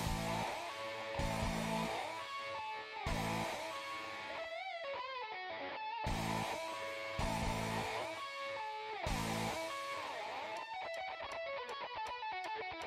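Background music: a guitar-led instrumental, with some bent, wavering notes about halfway through.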